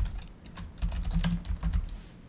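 Typing on a computer keyboard: a quick run of keystrokes entering a short layer name.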